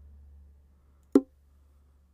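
A single sharp mouse click about a second in, loud against a faint, steady low hum.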